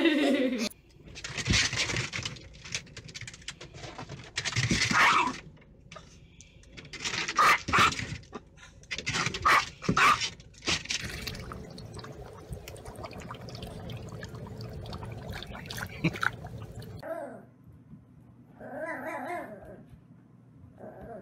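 A sequence of dog sounds. It opens with a husky's falling, howl-like call. A long stretch of irregular scuffling and rustling noise follows. Near the end a small papillon puppy gives a few short, high-pitched yips.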